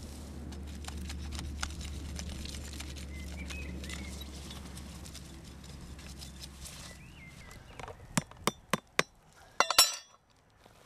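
A steady low rumble with light rustling as a potted Christmas tree is lifted from the ground. Then a blade cuts off the fine roots outside the pot: four separate sharp clicks, then a quick cluster of clicks near the end.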